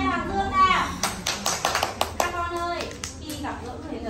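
Hand clapping: a rapid run of claps lasting a little over a second, with a woman's and young children's voices around it.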